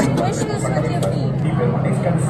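Indistinct nearby voices and chatter over a steady low hum.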